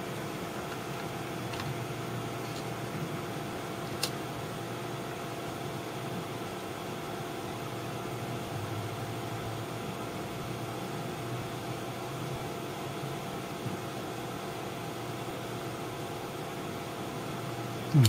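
Steady hum and hiss of room background noise, with a faint click about four seconds in.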